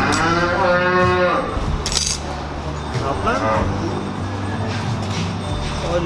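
A cow mooing: one long call of about a second and a half at the start, then a shorter call about three seconds in, over a steady low hum.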